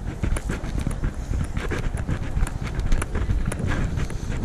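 Footsteps at a steady walking pace, about two a second, picked up by a chest-mounted action camera, over a low rumble of handling noise.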